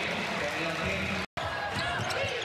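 Basketball arena game sound: crowd noise and voices, with a ball being dribbled on the hardwood court. A sudden split-second silence about two-thirds through marks an edit cut.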